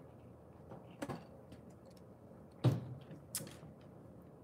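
Sparse handling sounds of taking a drink of water: a faint click about a second in, a louder knock about two and a half seconds in, and another click shortly after.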